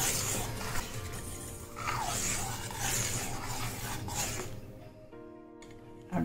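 Steel ladle stirring simmering sweet corn soup in a steel pan, a soft sloshing and scraping that fades out a second or so before the end, over quiet background music.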